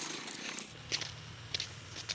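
Footsteps on a path, short scuffing clicks about twice a second, over a low steady rumble.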